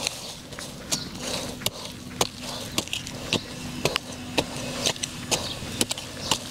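A small hand tool striking and digging into garden soil while lemongrass clumps are planted, giving short sharp knocks about twice a second. A faint steady hum runs underneath.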